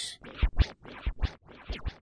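DJ scratching a record on a turntable: short, sharp back-and-forth strokes in quick pairs, about four a second.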